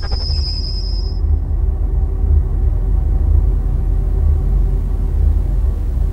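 Deep, steady bass rumble of a TV programme's title-sequence sound design, with a thin high ringing tone that dies away about a second in.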